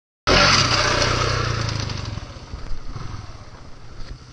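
Dual-sport motorcycle engine, cutting in abruptly a quarter second in, loud and close at first, then fading steadily as the bike moves away down the trail.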